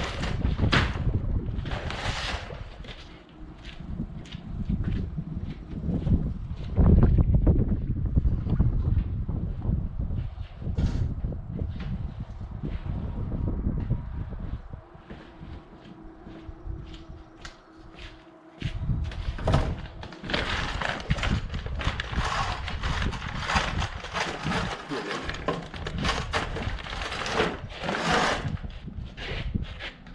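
Wind buffeting the microphone in gusts, with scattered knocks and rustling.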